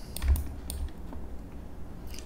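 A few light clicks of computer controls in the first second or so, over a low steady background hum.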